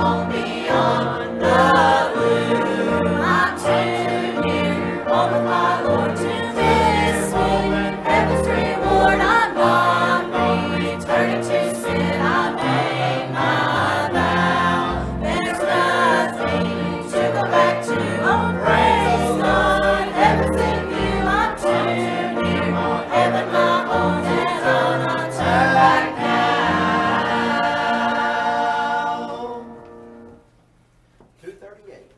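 Church choir of adults and children singing a hymn in unison with piano accompaniment, ending near the end on a held chord that dies away.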